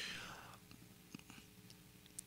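Near silence: a faint breath into a handheld microphone that fades within the first half second, then room tone with a few faint clicks.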